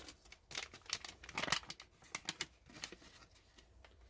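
Crinkling and crackling of a brown foil-laminate MRE pouch as a slab of breadsticks is slid out of it by hand. A string of light, uneven crackles, the loudest about a second and a half in, fading out in the last second or so.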